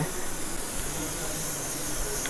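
Gas stove burner hissing steadily under the heating tawa.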